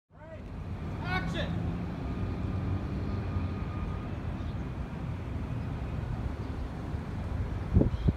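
Steady low rumble of a vehicle engine running. A short, high voice call sounds about a second in, and a few loud low thumps come near the end.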